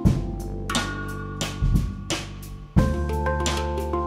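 Live instrumental music: ringing handpan notes over a plucked double bass line, with drum hits. The music dips briefly, then comes back on a strong accent about three seconds in.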